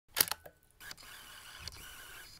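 A sharp double click near the start, then faint steady hiss of room tone.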